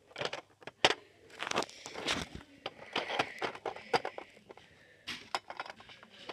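Light clicks and taps of small plastic toy figures and pieces being handled and set down on a wooden table, with a soft rustle of handling about two to three seconds in.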